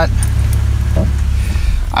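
Steady low rumble inside a car's cabin, the hum of the engine and road.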